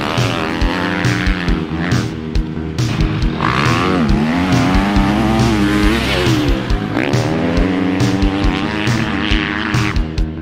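Motocross bike engine revving hard, its pitch rising and falling with two sharp drops about four and seven seconds in, as the bike accelerates and backs off. Background music with a steady beat plays over it.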